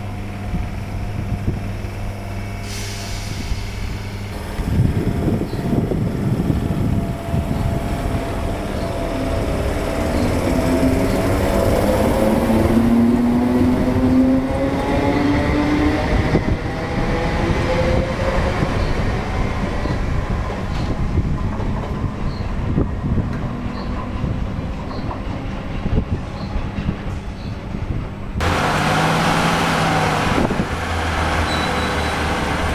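Strathclyde SPT electric multiple unit pulling away along a platform: its motor whine rises steadily in pitch as it gathers speed, over repeated clicks and knocks from the wheels on the rails. Near the end the sound cuts abruptly to a louder, noisier passing train.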